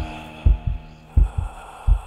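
A heartbeat sound effect: low double thumps, lub-dub, about three beats in two seconds, over a fading low hum.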